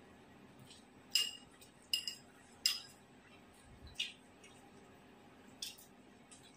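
Metal spoon and chopsticks clinking against a porcelain rice bowl while eating: about six light, ringing clinks at irregular intervals.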